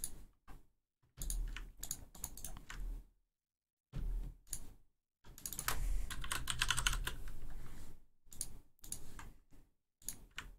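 Computer keyboard typing in short bursts of keystrokes, with a pause about three seconds in and a longer run of fast typing from about five to eight seconds.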